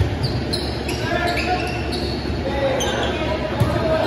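A volleyball struck with a sharp slap at the very start, and another ball impact about three and a half seconds in. Short high sneaker squeaks on the hardwood court and players calling out run between them, echoing in a large gym.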